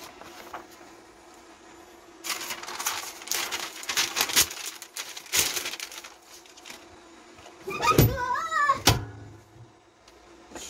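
Paper sheets rustling and crinkling as they are laid over a jersey on a heat press, with a few sharp clicks. Then the heat press is pulled shut by its lever: a loud clunk with a short wavering squeak, and a second sharp click about a second later, over a faint steady hum.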